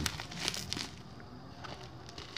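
Plastic parcel wrapping crinkling as the taped package is handled, with a few sharp rustles in the first second that then die down.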